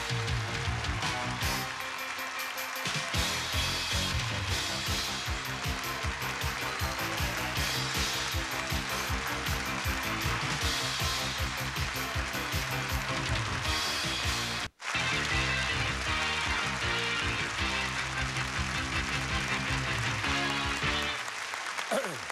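Upbeat 1980s game-show theme music playing over the break bumper. It cuts out completely for a split second about two-thirds of the way through, at an edit point, then carries on and fades out near the end.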